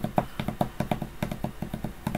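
A rapid, irregular run of light clicks, about ten a second, over a faint low steady hum.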